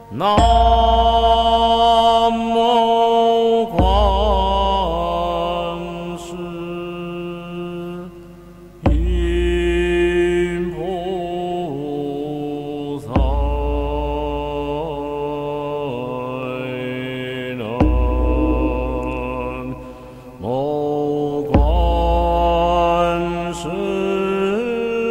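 Recorded Buddhist chanting of a Buddha's name (fo hao), sung slowly in long held, wavering notes over a deep low tone, a new phrase starting about every four to five seconds.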